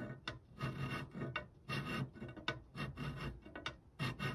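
Bastard file rasping back and forth on the edge of a metal enlarger negative carrier clamped in a saw vise, widening the frame opening. The strokes come in a steady rhythm, about two or three a second.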